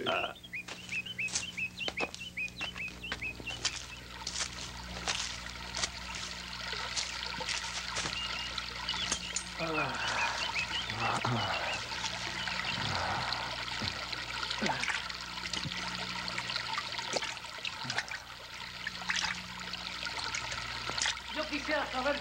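Water trickling and pouring, as from a stream or spring. Quick high chirps sound in the first few seconds, and a few falling sliding tones come about ten seconds in.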